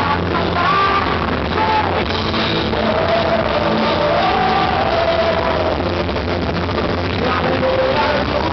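Rock music from a full band with guitar, loud and continuous, with a long, wavering held note in the middle.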